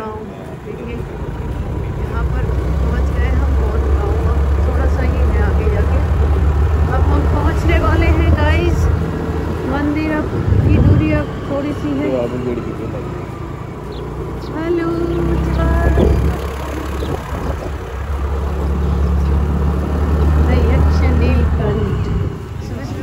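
Wind buffeting the microphone on a moving scooter, a heavy low rumble that swells and eases in gusts, with the scooter's engine running underneath. Brief faint voices or calls come through in the middle.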